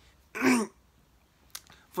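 A man clears his throat once, a short burst about a third of a second in.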